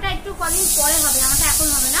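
A woman talking, with a steady high hiss that comes in suddenly about half a second in and keeps on under her voice.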